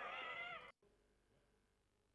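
A cat meowing once: a single drawn-out meow that cuts off abruptly under a second in.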